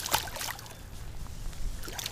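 Small smallmouth bass released into shallow river water, landing with one brief splash at the very start.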